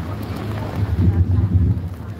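Wind buffeting a phone microphone: a loud, uneven low rumble, with faint voices of a crowd behind it.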